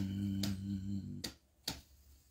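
A low hummed tone held steady, cutting off a little over a second in. Sharp clicks come about half a second in and again near the end.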